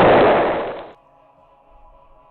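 A loud explosion sound effect: a dense rush of noise that dies away about a second in, leaving faint background music.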